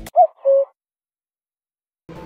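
Two brief pitched notes, the first short and bending up then down, the second a little lower and held steady, then dead silence.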